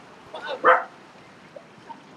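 A dog giving a single short bark a little over half a second in.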